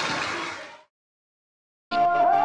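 Chatter of a crowd of schoolchildren in a hall, fading out within the first second, then silence. Music starts just before the end.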